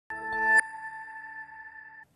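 Short electronic news-programme ident sting: a synthesized chord swells for about half a second and ends with a bright hit, leaving a high ringing tone that lingers quietly.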